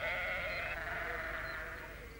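A sheep bleating: one long, wavering bleat that fades away.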